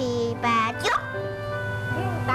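A young girl's high voice counting aloud, with one short call about half a second in, over soft background music with steady held notes.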